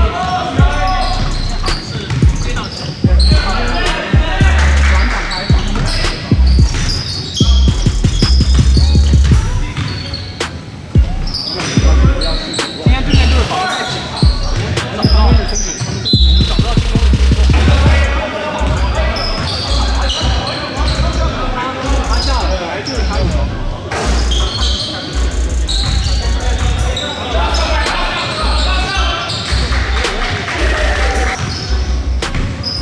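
Basketball game on a hardwood gym floor: the ball dribbled and bounced repeatedly, sneakers squeaking, and players calling out, all echoing in the large gymnasium.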